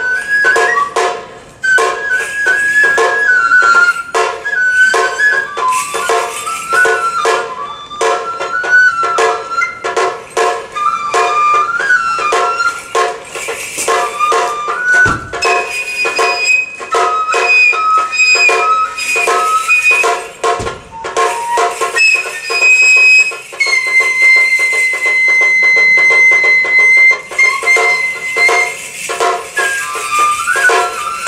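Kagura ensemble: a Japanese bamboo transverse flute (fue) plays a winding melody over a fast, steady run of drum strokes, holding one long high note near the end. Two deep thuds sound about halfway through.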